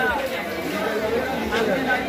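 Crowd chatter: many people talking at once in a dense crowd.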